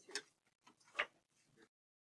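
Two faint computer mouse clicks, about a second apart, with a few softer ticks between. The sound then cuts off abruptly into dead silence as the screen recording is stopped.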